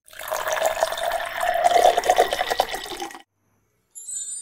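A liquid sound of splashing and gurgling, like water being poured, lasting about three seconds; it starts suddenly and cuts off abruptly.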